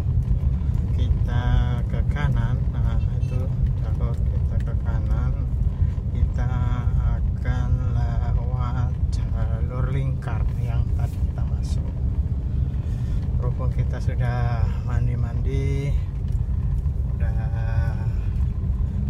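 Steady low rumble of a car's engine and tyres heard inside the moving car's cabin, with a voice talking over it at intervals.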